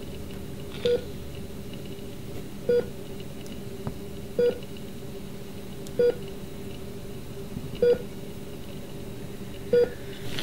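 A hospital patient monitor beeping: six short single-pitch electronic beeps, evenly spaced a little under two seconds apart, over a steady low hum.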